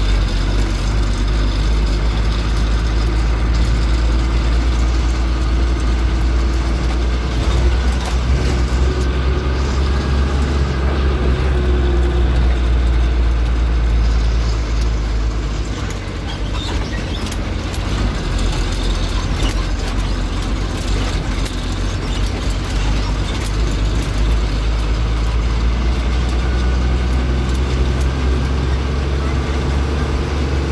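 A bus engine is heard from inside the cab while driving, with a steady low rumble and frequent rattles and clicks from the vehicle. The engine noise eases briefly about fifteen seconds in, then picks up again.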